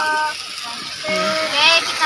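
Brief bits of talk over a steady sizzle of ensabi (Iban mustard greens) stir-frying in a wok.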